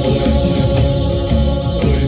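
Choir singing sustained notes over a steady beat.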